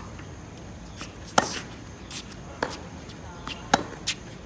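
Tennis balls being struck by rackets and bouncing on a hard court during a baseline groundstroke rally. Two loud, close racket hits come about two and a half seconds apart, one in the first half and one near the end, with fainter hits and bounces from the far end between them.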